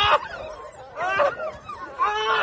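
Belgian Malinois puppies yipping and whining: two short, high calls, one at the start and another about a second in.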